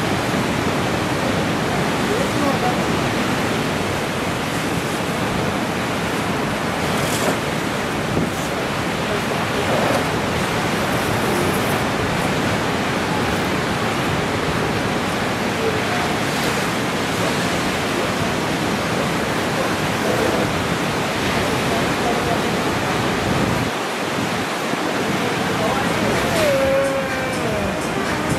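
Steady rushing noise of ocean surf breaking.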